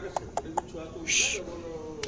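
A person coaxing a dog with soft, wavering cooing sounds, with a few quick tongue clicks near the start and a short 'tss' hiss about a second in.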